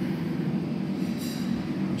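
Steady low mechanical hum, with a brief high hiss a little after a second in.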